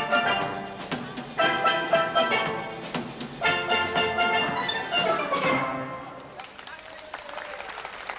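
A steel band of hammered oil-drum steelpans playing the closing bars of a soca tune. Full chords are struck together about every two seconds, each ringing and fading; the last one dies away about six seconds in.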